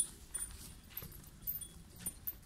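A cow walking on packed dirt: a few soft, irregular hoof steps with a light jingle of its tether chain.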